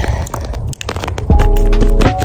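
Scissors cutting and crinkling a sheet of Flex Tape, its plastic backing rustling. A little over a second in, background music with held notes and a heavy bass comes in and becomes the loudest sound.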